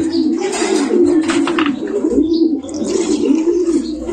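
Many domestic pigeons cooing together, a low wavering coo that never stops, with a short stretch of hissy noise in the first couple of seconds.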